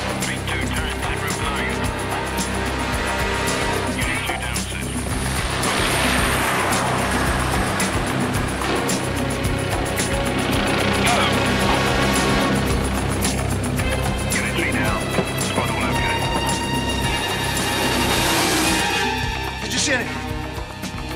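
Film score music over the noise of arriving vehicles, which swells and fades about three times.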